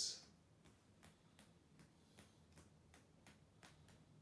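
Near silence with faint, regular ticking, about three ticks a second.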